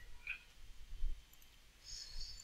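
Faint computer mouse clicks over quiet room noise, with a faint high-pitched chirping starting near the end.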